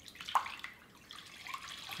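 Milk pouring from a half-gallon plastic jug into an empty enameled cast-iron Dutch oven, a faint splashing stream that grows a little louder near the end.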